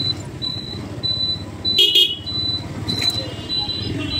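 Busy street traffic with engines running and people talking. A short high electronic beep repeats about twice a second, and a vehicle horn honks briefly about two seconds in. A fainter horn-like tone starts near the end.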